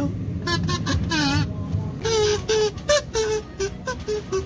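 Kazoo being hummed into: a wavering phrase about a second in, then a string of short notes held at steady pitches.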